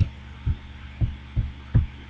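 Four short, dull thumps about half a second apart as a computer's controls are clicked to move through presentation slides, over a steady low mains hum.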